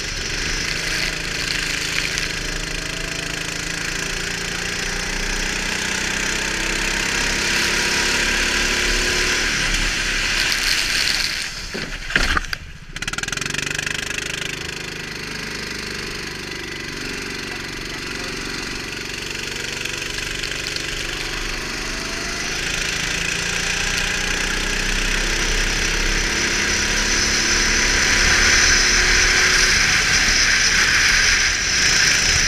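Go-kart engine heard onboard at racing speed, its pitch rising and falling with the throttle through the corners, over a steady hiss of wind and spray from the wet track. A brief clatter and dip in the sound about twelve seconds in.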